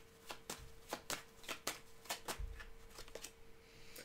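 Tarot cards being handled and shuffled: a run of light, irregular clicks and snaps, over a faint steady hum.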